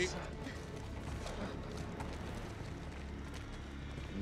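A steady low rumble with faint, scattered knocks and clicks over it, the film's sound effects for a burning, smoke-filled ruin.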